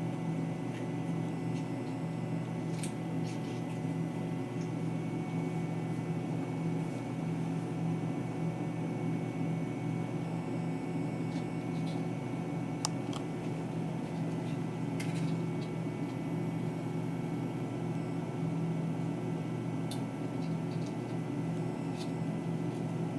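A steady low hum runs throughout, with a few faint, sharp clicks scattered through it: small scissors snipping a slit in a ball python egg's leathery shell.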